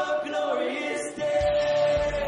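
A worship song: a man singing with acoustic guitar, holding one long note through the second half.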